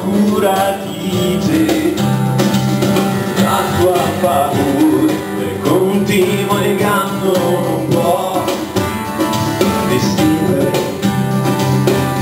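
Acoustic guitar music from a live song, an instrumental stretch between sung lines, with steady low notes held underneath.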